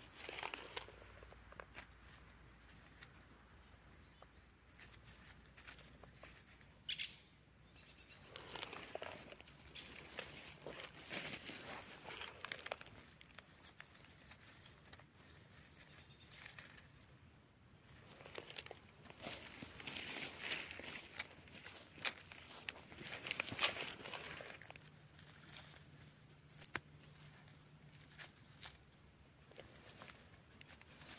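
Footsteps and rustling through a pine-forest floor: dry grass, fallen needles and branches brushed in irregular bursts, with a hand parting the grass near the end.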